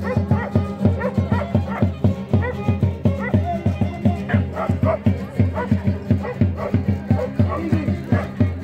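Andean carnival string-band music: guitars strummed in a steady, quick rhythm, with a dog yipping and barking over it.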